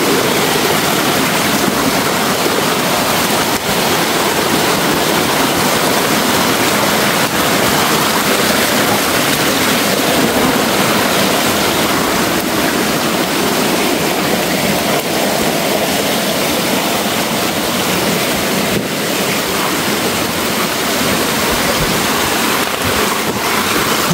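Small forest stream running over the path, a steady rushing of water close by.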